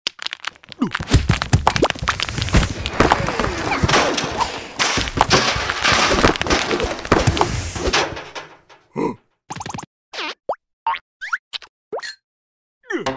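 Cartoon sound effects of a stream of ice chunks clattering and thudding down onto a growing pile, a dense, busy run of impacts that dies away after about eight seconds. A few short, separate squeaky sounds, some rising in pitch, follow near the end.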